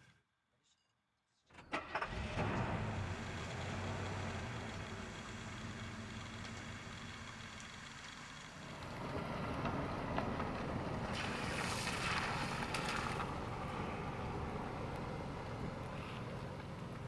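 A car engine starts about a second and a half in and runs steadily, then grows louder about nine seconds in as the car gets under way.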